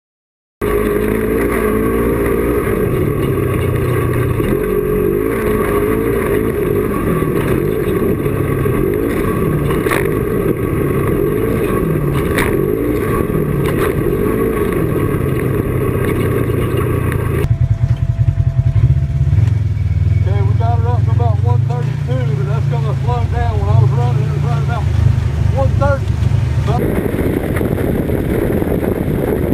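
Polaris RZR XP 1000's twin-cylinder engine and CVT driveline running hard in high gear, its pitch rising and falling with the throttle, under heavy wind and trail noise. About two-thirds of the way through, the sound turns abruptly duller as the hiss drops out, leaving a low drone with a wavering pitch.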